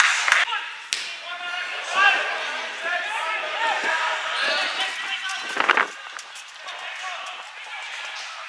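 Footballers shouting and calling to each other across an outdoor pitch, with a few sharp thuds of the ball being kicked, one clear about a second in.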